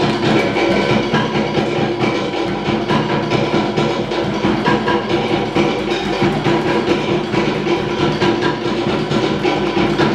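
Tahitian ʻōteʻa drumming: fast, unbroken strokes on wooden slit drums over a deeper drum beat, played as dance music.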